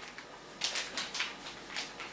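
Faint handling noises: several light ticks and rustles, spaced out, as small things are handled on the counter.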